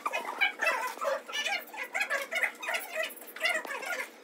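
Dry-erase marker squeaking on a whiteboard while a word is written, in many short squeaks, one per stroke.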